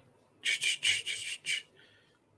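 Four or five short, scratchy rubbing strokes in quick succession over about a second, then quiet.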